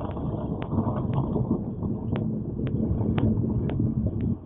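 Car tyres rolling slowly over ice-crusted snow and fallen ice and branches, a steady rough crunching, with a light regular click about twice a second.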